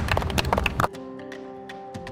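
A small group clapping hands over background music; the clapping cuts off abruptly about a second in, leaving soft music with held notes.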